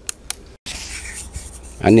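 Two light clicks, then after a sudden break a steady scratchy rustling hiss, until a man's voice starts near the end.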